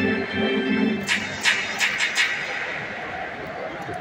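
Stadium organ holding a few notes for about the first second, then the crowd clapping in rhythm, about three claps a second, for a second or so, over a steady crowd hum.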